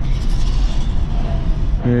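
Car engine and tyre road noise heard from inside the cabin while driving, a steady low rumble.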